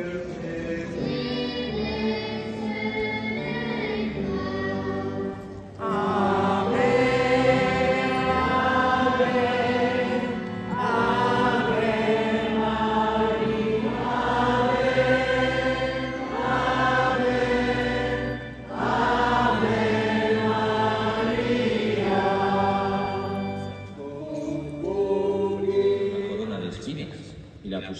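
A choir singing a hymn in sustained phrases broken by short pauses. It grows louder about six seconds in.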